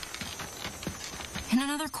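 A run of light, irregular clip-clop taps in a cartoon soundtrack, then a woman's voice starts speaking about one and a half seconds in.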